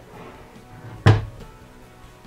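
Wooden wall cabinet door shutting with a single sharp knock about a second in.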